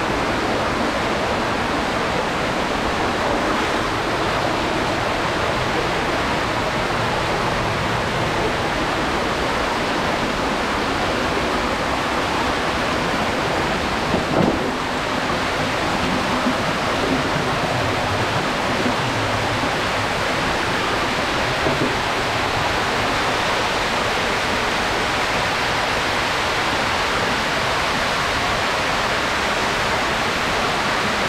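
Shallow underground stream rushing steadily over rocks and a small cascade in a stone-lined tunnel. A brief louder knock about halfway through, with a few smaller ones after.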